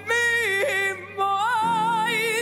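A woman singing live into a microphone with piano accompaniment: long held notes with strong vibrato, a short break about a second in, then a higher note held with vibrato.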